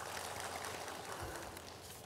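Audience applause in a large hall: many hands clapping in a dense, steady patter that slowly thins out.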